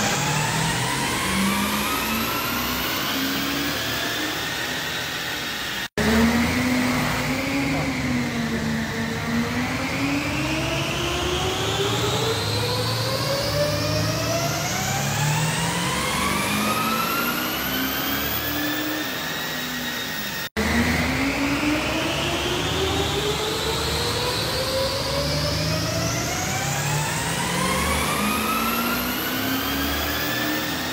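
2016 Audi SQ5's 3.0-litre V6 diesel engine pulling hard on a rolling-road dyno, its pitch climbing steadily through long full-throttle pulls. The sound breaks off abruptly twice, about six seconds in and again near twenty seconds, each time starting a fresh climb.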